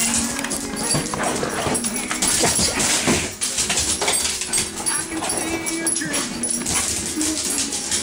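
A dog playing and scrambling about, with repeated knocks and scuffles, over a song playing in the room.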